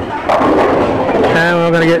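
Bowling ball striking the last standing pins, a sharp crack followed by about a second of pin clatter, knocking down the leave to convert the spare.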